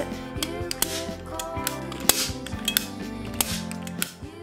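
Manual hand-squeezed staple gun firing staples into an armchair's upholstery fabric, a series of sharp clacks about every half second to a second, over background music.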